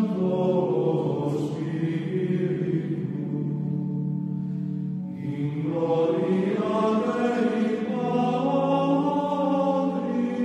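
Gregorian chant sung by a choir: long, slowly gliding sung phrases, one phrase ending and a new one beginning about halfway through.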